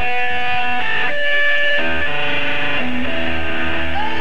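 Electric guitar playing held, ringing chords. The chord changes and a low bass note comes in about two seconds in.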